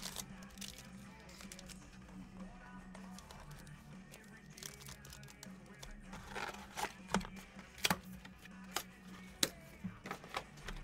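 A cardboard trading-card box and its packaging being handled and opened: rustling and crinkling, with several sharp clicks and knocks in the second half, over faint background music.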